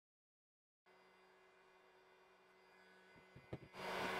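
Near silence with a faint electrical hum and a few faint clicks. Near the end, a Bosch PHG 500-2 heat gun is switched on and starts blowing steadily.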